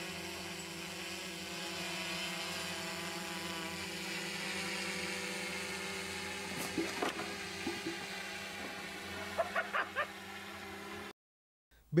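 A steady, even machine-like hum with several evenly spaced tones, joined by a few short sharp sounds around seven seconds and again near ten seconds; it cuts off abruptly shortly before the end.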